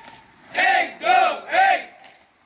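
A group of men shouting in unison while marching: three loud calls about half a second apart, each rising and falling in pitch.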